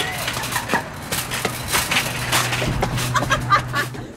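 Metal shopping cart being pushed fast across parking-lot pavement with a person riding in it, its wheels and wire basket rattling and clattering irregularly over a steady low hum.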